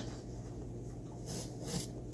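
Soft rustling of a small paper packet being handled and opened, a few light rustles mostly in the second half, over a faint steady low hum.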